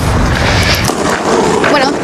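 Roller-skate wheels rolling over a rink floor, a dense rumble through the first second or so, before a voice comes in near the end.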